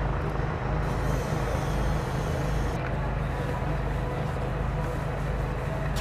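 A motor running steadily, a low even hum under a constant rushing noise, typical of an engine or generator powering equipment at the work site.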